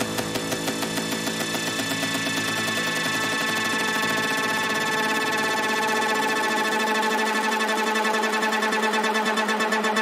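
Psytrance track in a breakdown: the kick and bass fall away, leaving layered synthesizer chords pulsing quickly and steadily, with the pulse growing stronger near the end.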